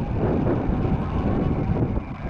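Wind buffeting the camera microphone: a steady low noise.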